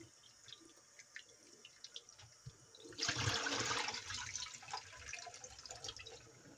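Thin stream of tap water and soft drips and splashes as hands rub raw meat in a plastic tub in a stainless steel sink. About halfway through comes a louder rush of water as the tub is tipped and emptied into the sink, fading over a couple of seconds.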